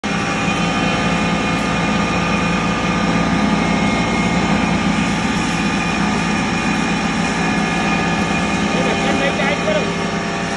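A 5 HP stoneless atta chakki (electric flour mill) running with a loud, steady machine hum made of several steady tones.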